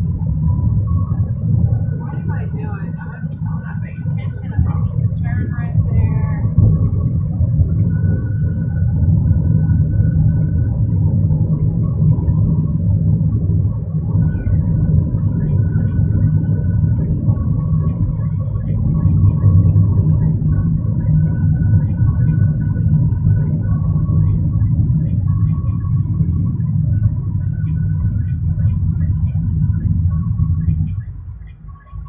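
Steady low rumble of a car driving, heard from inside the cabin, with faint voices in the background.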